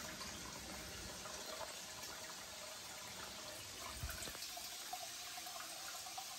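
Faint, steady rush of water from a hose running into an aquarium, topping up its water level.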